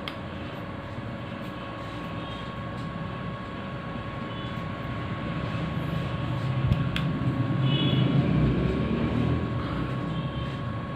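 Steady background hum with a low rumble that grows louder through the second half, and a single sharp click about seven seconds in.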